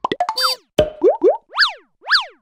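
Cartoon-style sound effects for an animated logo: a quick flurry of clicks and pops with falling swoops, then two short rising whistles about a second in, and a springy boing that rises and falls near the end.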